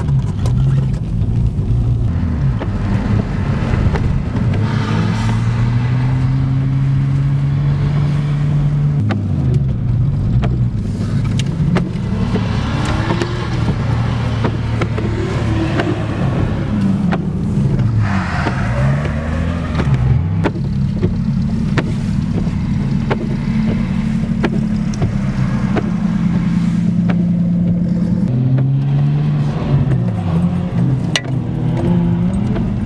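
Car engines revving, their pitch climbing, holding at steady revs and dropping again several times, heard from inside a car's cabin.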